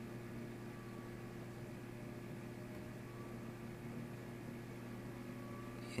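Room tone: a steady low hum with an even hiss underneath, and no other sound.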